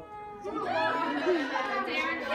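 Several people talking over one another in a group, getting louder about half a second in.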